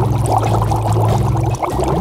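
Water bubbling and gurgling, a quick run of small bubble pops, over low background music.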